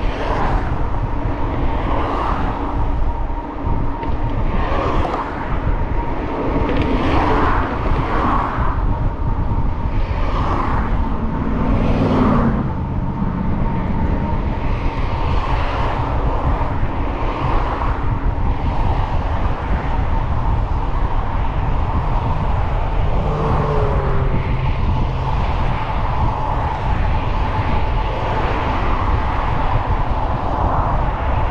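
Wind buffeting the microphone of a moving bike, over the rush of traffic on the freeway alongside, with a thin steady whine underneath.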